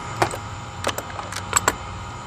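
A wrench working the nut on a car battery's negative terminal clamp: several sharp, irregular clicks of metal on metal as the nut is loosened.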